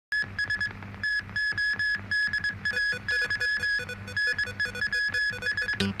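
Electronic television news opening theme: rapid, staccato synthesizer beeps repeating several times a second over a steady low bass pulse.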